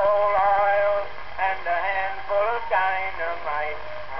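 A man singing a comic song, heard from a 1908 Edison four-minute wax cylinder on a phonograph. The sound is thin, with nothing in the upper treble, and a faint steady hum runs underneath.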